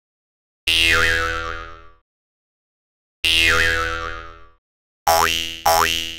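Cartoon 'boing' spring sound effects dubbed over dead silence: one boing about a second in, another about three seconds in, then a quick run of them near the end, roughly three every two seconds. Each boing has the same springy pitch dip and fades out.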